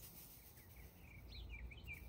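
Faint bird chirping, a quick run of short up-and-down chirps in the second half, over a low steady background rumble.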